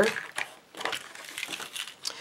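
A few light clicks and handling rustles as a small compartment box with a clear plastic lid is opened by hand.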